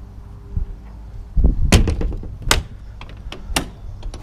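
Motorhome's exterior generator-bay door being shut with a thud about a second and a half in, followed by a few sharp clicks and knocks.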